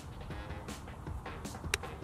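Background music, and near the end a single sharp click of a child's golf club striking the ball.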